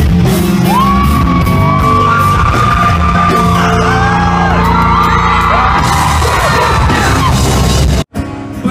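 A live rock band playing loud through a venue PA, heard through a phone microphone in the crowd: a dense wall of distorted guitars, bass and drums. From about a second in, vocalists yell and sing long held notes over it.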